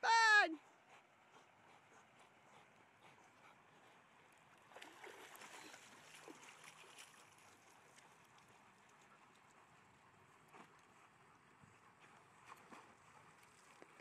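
Faint, steady rush of water at a pond where dogs are swimming. It swells for about two seconds around five seconds in.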